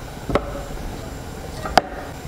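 Two sharp knocks, about a second and a half apart, as a slotted spoon tips cooked pumpkin chunks into a blender jar. The second knock is the louder and rings briefly.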